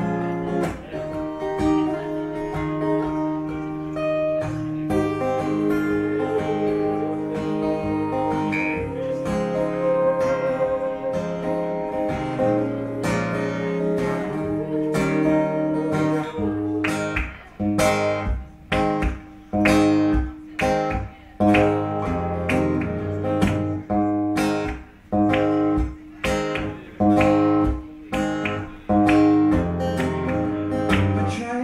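Live instrumental break of an indie pop song: acoustic guitar strummed over sustained keyboard chords. About halfway through it turns to short, stop-start strummed chords with brief silences between them.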